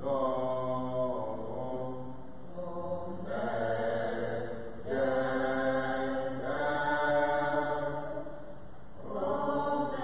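Slow, chant-like hymn singing in long held notes, each held for one to two seconds before moving to the next, the level swelling and falling between phrases.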